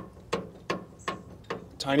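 Hydraulic lift cylinder rocked by hand, its mounting pins clicking in their eyes about three times a second. The clicks come from the slight play left at both ends so grease can get in.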